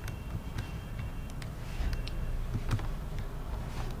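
Steady low background hum from the recording microphone, with a few faint, scattered clicks of a computer mouse as a clip is dragged along the editing timeline.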